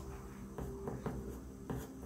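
Pencil scratching across drawing paper in a few short hatching strokes, faint over a steady low hum.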